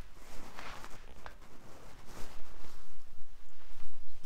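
Rustling, scuffing and camera-handling noise from a person clambering over a fence, with two rushes of noise and a short knock about a second in, over a steady low rumble.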